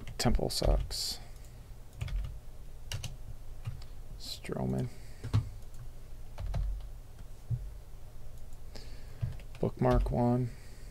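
Typing on a computer keyboard: irregular, spaced key clicks, with a brief murmur of voice about halfway through.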